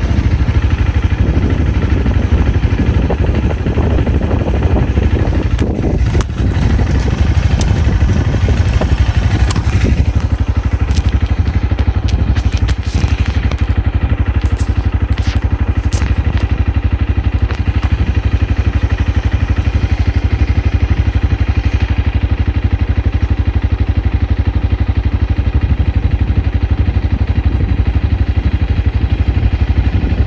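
Steady low rumble of a car, heard from inside it, with the higher road hiss falling away about ten seconds in as it slows. A few light clicks come around the middle.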